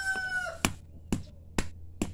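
A rooster crowing, its call trailing off about half a second in, then three sharp knocks about half a second apart: a hand-held stone striking a hard, woody carao (Cassia grandis) pod to crack it open.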